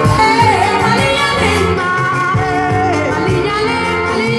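A woman singing live into a microphone over a full band, holding long notes that waver and bend in pitch.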